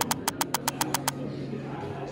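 Typing sound effect: a quick run of evenly spaced key clicks, about ten a second, stopping about a second in.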